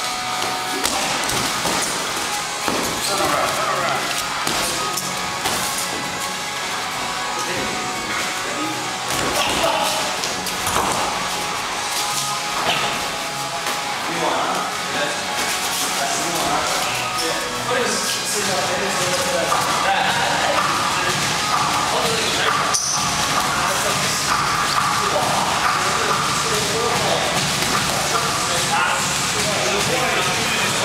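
Music playing throughout, with voices and scattered dull thuds of boxing gloves landing during sparring.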